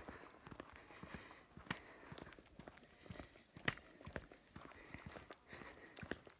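Faint footsteps of someone walking along a path, an irregular patter of soft steps with a few sharper clicks standing out, the loudest a little before four seconds in.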